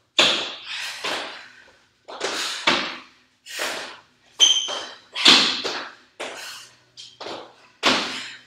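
Exercise sounds during burpees and dumbbell snatches: a dozen or so irregular bursts of hard, breathy exhalation mixed with thuds of landing and of the dumbbell.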